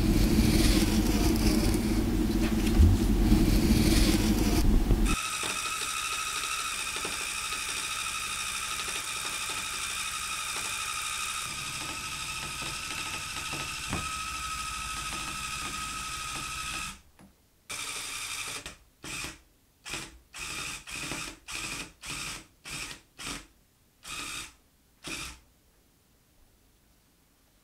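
Handheld electric rug-tufting gun running as it punches yarn into the backing cloth. It is heavy and close for the first few seconds, then a steady mechanical whine with a high tone. From about two-thirds in it runs in about a dozen short bursts, switched on and off.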